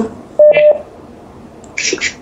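A short electronic telephone-line beep about half a second in: one steady mid-pitched tone lasting about a third of a second. A brief burst of hiss follows near the end.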